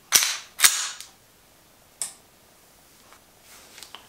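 Slide of a stainless semi-automatic pistol being racked by hand: two sharp metallic clacks about half a second apart, the slide pulled back and then snapping forward. A single lighter click follows about two seconds in.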